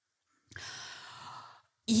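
A woman's breath drawn into a close microphone, an even, breathy hiss about a second long, before she speaks again.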